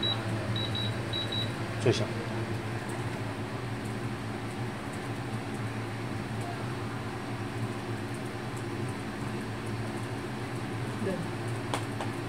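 TECO MP29FH portable air conditioner running in cooling mode on its lowest fan setting: a steady, even hum. A few short high beeps sound near the start.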